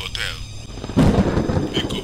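A thunderclap sound effect: a sudden loud rumbling crash about a second in that dies away over the next second.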